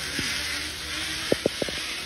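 Zip-line trolley running along the steel cable, a steady hiss, with a few short knocks near the end.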